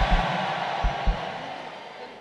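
A large congregation shouting and cheering in response, with a few low drum beats in the first second; the crowd noise fades away toward the end.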